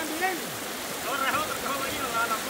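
Shallow river water running over rocks, a steady rush, with faint voices talking underneath.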